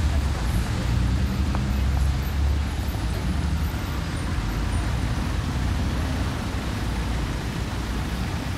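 Street traffic noise: a steady low rumble of road vehicles.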